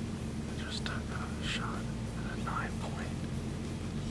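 A man whispering a few short phrases, over a steady low hum.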